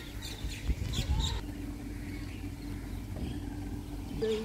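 Small birds chirping in short, quickly repeated notes during the first second or so, over a faint steady hum and low outdoor background noise.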